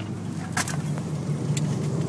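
Subaru WRX's turbocharged flat-four engine heard from inside the cabin while driving: a steady low drone over road noise, its note rising a little in the second half. A short click about half a second in.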